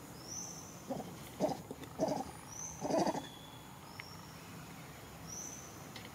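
Monkey giving four short, low calls about half a second to a second apart, the last the loudest. Thin high bird calls, each falling slightly, sound now and then in the background.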